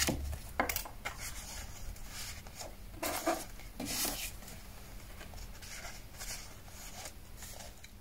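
Soft, scattered rustles and light taps of stiff paper cards being handled over a paper journal page and pocket.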